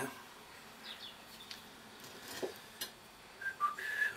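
Faint clicks of small metal parts being handled on an alternator's rectifier terminals, then near the end a few short, high whistle-like notes.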